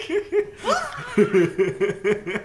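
Hearty male laughter in rapid repeated bursts.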